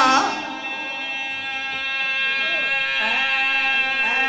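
A steady held drone tone, level in pitch with many overtones, with a faint voice rising under it two to three seconds in.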